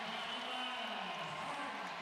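Arena crowd cheering a made three-pointer, with one long drawn-out shout sliding down in pitch over the first second and a half.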